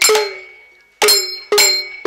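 Villu, the long musical bow of villupattu, struck in rhythm: each stroke gives a sharp hit with the string's ringing note and the jingle of the bells on the bow. One stroke rings out for about a second, then the strokes resume about twice a second.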